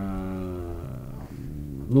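A man's drawn-out hesitation hum, one held pitch that sags slightly and fades after about a second.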